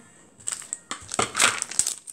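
Plastic packaging crinkling and crackling in the hands: irregular crackles starting about half a second in.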